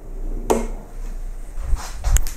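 A tennis racket being handled and seated in a Dunlop swingweight machine: a sharp knock about half a second in, then softer bumps and clicks toward the end.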